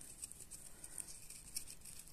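Faint scraping and crunching of a plastic stick being pressed into potting soil in a plastic cup to make a planting hole.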